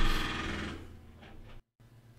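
A short low thump, then a steady low hum and hiss that fades away over about a second and a half, broken by a moment of total silence near the end.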